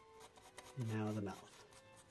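2 mm mechanical pencil with 2B lead scratching across sketch paper in short quick strokes. About a second in, a short low hum of a man's voice, a little over half a second long, is the loudest sound.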